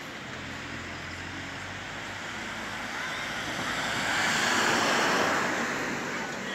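Road noise of a passing vehicle, swelling to its loudest about four to five seconds in and then fading.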